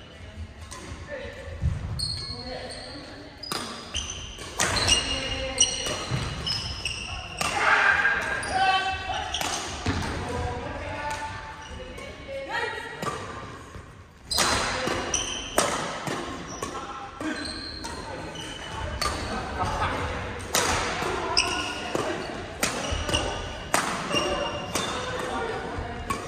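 Badminton rallies in a large, echoing gymnasium: repeated sharp cracks of rackets hitting shuttlecocks from several courts, with short high squeaks of indoor court shoes on the wooden floor and voices in the background.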